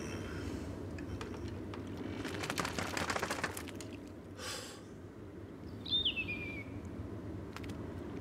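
Soundtrack of a quiet scene with a steady low rumble underneath, a quick clatter of small clicks about two and a half seconds in, and a short rush of noise near the middle. The loudest sound is a single high whistle that falls in pitch, about six seconds in.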